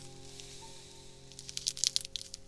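Quiet background music with long held tones. Near the end there is a short run of crinkling, clicking rustles from materials being handled.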